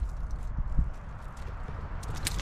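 Irregular steps on gravel with a low rumble underneath and one louder thump a little under a second in.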